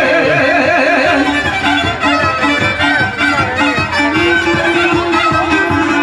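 Live Bosnian izvorna folk music led by a fiddle playing a quick, ornamented melody over a steady rhythmic string accompaniment.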